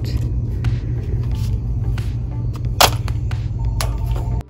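Wire shopping cart rolling over a concrete store floor: a steady low rumble with light rattling clicks, and one sharp clack a little under three seconds in.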